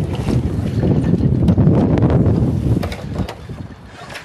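Wind noise on the microphone and a jib flapping as it is rolled onto its roller furler. The noise dies down about three seconds in, as the sail is furled away.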